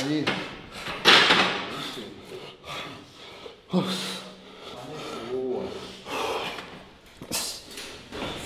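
A man breathing hard in heavy gasps and exhales, with a few short groans, exhausted just after the final rep of a hard leg-training set.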